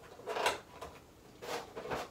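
A figure's packaging being handled: two brief rustling scrapes about a second apart, as a small accessory is put back into its box.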